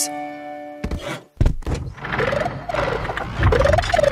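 Cartoon soundtrack: a held musical chord fades out, then a heavy thunk about a second and a half in, followed by a busy stretch of music and sound effects.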